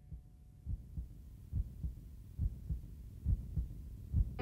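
Recorded heartbeat at the start of a song's intro: soft, low double thumps, about one pair every 0.85 seconds, growing gradually louder.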